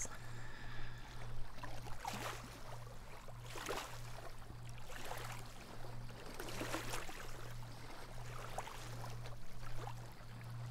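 Small waves of the calm Baltic Sea lapping on a stony sand beach, soft washes coming every second or two over a low steady hum.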